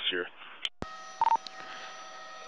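Police two-way radio channel between transmissions: a sharp click as the channel keys, then steady radio hiss with faint tones and a short, loud beep about a second in.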